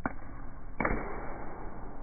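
Two sharp knocks about three-quarters of a second apart, the second louder and followed by a short rush, from a spinning kick at the cap of a plastic water bottle.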